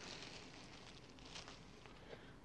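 Faint rustle and crinkle of a thin plastic bag as white cotton NBC inner gloves are slid out of it.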